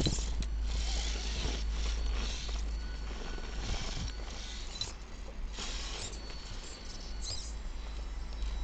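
Axial XR10 rock crawler's small electric motor and geartrain whining in short bursts as the throttle is blipped while it crawls up a rock face, over a steady low rumble.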